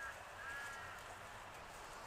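A faint bird call: one short arched, honking note about half a second in, like a duck or goose calling.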